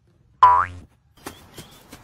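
A cartoon-style 'boing' spring sound effect: one short tone sweeping up in pitch, about half a second in. A few faint taps follow later.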